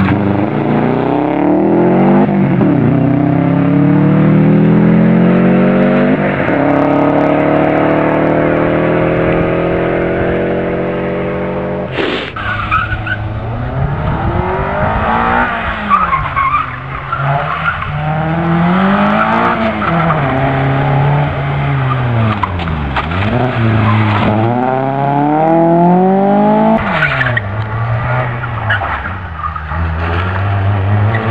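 Rally cars driven hard on a tarmac special stage, one after another. First a Subaru Impreza's engine climbs through the gears with two upshifts; after a sudden cut about twelve seconds in, a small hatchback's engine revs up and down through the corners with tyre squeal.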